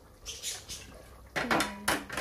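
Cookware clinking: a few faint knocks, then several sharp metallic clinks about one and a half to two seconds in, from a steel cooking pot being handled with its lid and a spoon.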